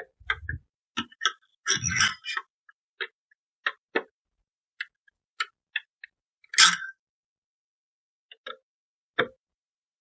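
Irregular small metallic clicks and ticks of a long screwdriver turning a CPU cooler's mounting screw down through the heatsink, a little at a time, with brief scraping rattles about two seconds in and again past the six-second mark.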